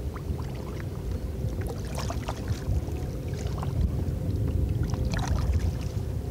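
Small waves lapping and splashing against the side of a kayak, in irregular light slaps, over a steady low rumble of wind on the microphone.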